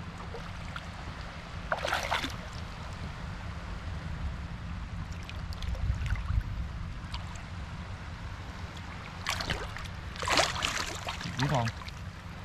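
Hands digging and scooping in shallow seawater over a sandy bottom at a mantis shrimp burrow: water sloshing and trickling, with a louder splash about two seconds in and a few more near the end, over a steady low rumble.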